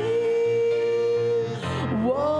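Worship song with acoustic guitar accompaniment: a singer holds one long note to the end of a line, then breaks off briefly before the next phrase starts.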